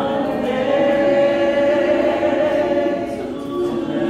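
Unaccompanied singing voices holding long, slow notes.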